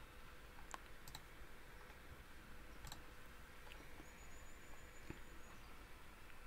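A few faint computer mouse clicks, about three, over low room tone: clicking through a program's buttons.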